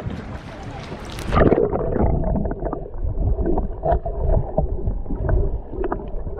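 Water sloshing at the surface with a short laugh, then about a second and a half in the sound turns muffled as the camera goes underwater: a low rumble of moving water with bubbling and scattered faint clicks from snorkelers in shallow water.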